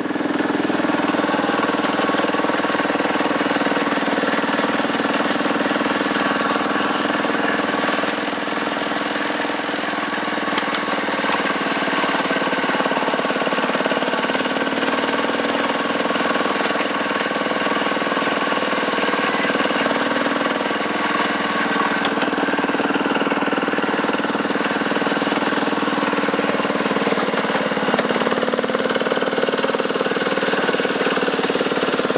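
Miniature Terrier ride-on locomotive running steadily along the track, heard close up from the driver's seat: an even, continuous engine drone.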